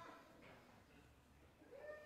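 Near silence, room tone, then a faint man's laugh beginning near the end.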